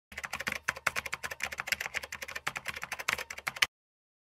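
Rapid, irregular clicking of keyboard typing, a sound effect laid under the title text appearing, running for about three and a half seconds and cutting off suddenly.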